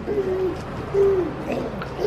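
Baby cooing: two drawn-out 'ooh' sounds on one pitch, the second about a second in, each falling away at the end.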